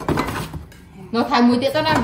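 A metal food can knocks and clinks on a granite countertop as the cans are set out, followed about a second later by a loud sing-song voice.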